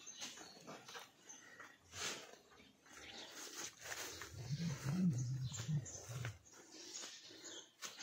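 An animal's low, wavering call lasting about two seconds, around the middle, over faint scattered clicks.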